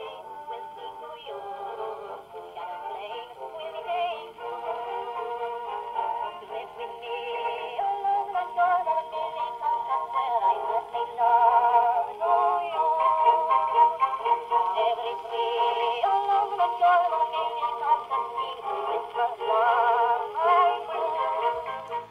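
An old vocal record playing on an Odeon portable wind-up gramophone: a singer with vibrato over accompaniment, in a thin sound with no bass and no high treble. It grows louder about halfway through.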